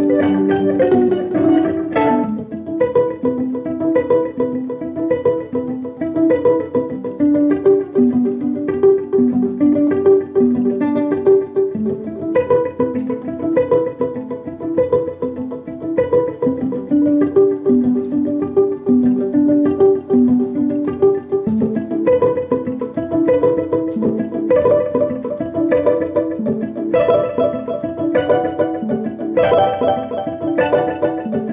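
Violin played pizzicato, plucked while held like a guitar, in a steady rhythmic pattern, with repeating plucked phrases layered over one another by a Digitech JamMan loop pedal.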